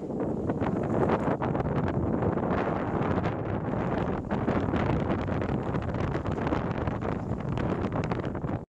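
Wind buffeting the microphone on a sailboat under way: a steady rushing with constant gusty crackles.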